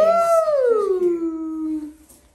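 A woman's long wordless vocal call: it rises, then slides down and holds low for about a second before stopping.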